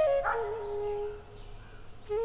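Soundtrack flute music with held notes that fades about a second in, and a brief sharp cry about a quarter of a second in.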